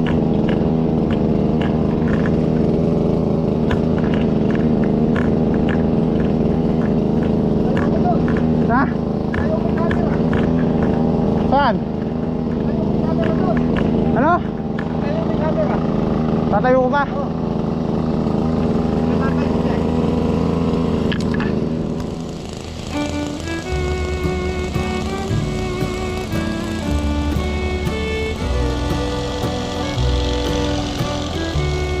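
A small engine running steadily under way, with a few brief rising whistle-like calls over it. About two-thirds of the way through it gives way to background music.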